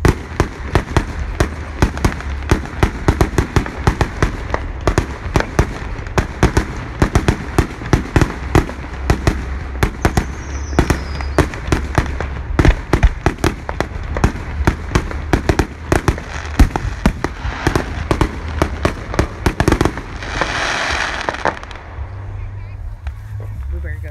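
Fireworks display: rapid, overlapping aerial shell bangs, several a second, with a short falling whistle about halfway through and a hissing rush near the end.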